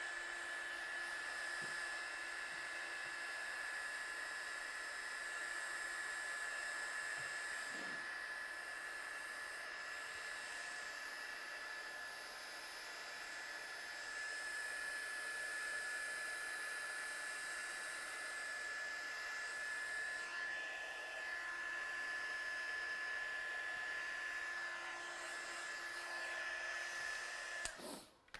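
Craft heat gun blowing steadily, with a steady high whine from its fan motor, drying freshly stamped ink on cardstock; it is switched off near the end.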